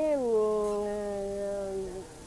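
A woman's voice drawing out one syllable for nearly two seconds, dropping in pitch at first and then held level, before it stops just before the end.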